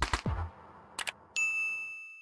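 Animation sound effects: a short swishing sweep at the start, a click about a second in, then a bright bell ding that rings on and fades. These are the subscribe-button click and notification-bell effects.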